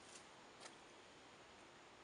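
Near silence: faint steady background hiss with two small clicks about half a second apart early on.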